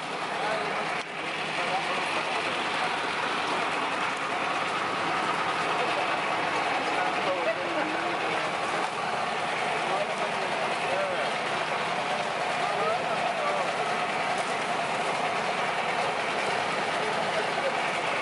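A motor running steadily, with people talking faintly in the background.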